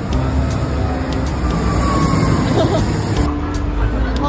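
Street traffic noise, a steady low rumble of passing cars and buses, under background music with a light, regular ticking beat.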